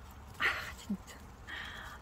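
Faint scraping of a small handmade clay lattice door on a miniature house as it is pulled open by hand: a short scrape about half a second in, then a thinner, steadier scrape near the end.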